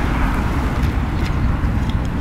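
Steady outdoor background noise: an even low rumble with a lighter hiss over it, with no distinct events.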